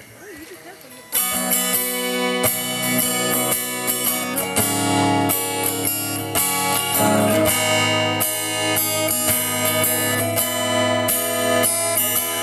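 Acoustic guitar strummed in chords, a song's instrumental intro that starts about a second in and runs on steadily.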